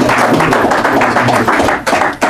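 Audience applauding with dense, irregular clapping that starts to thin out near the end.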